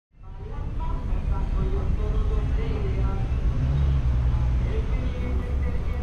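Low rumble of a stopped car idling amid city street traffic, swelling somewhat in the middle, with faint wavering tones above it.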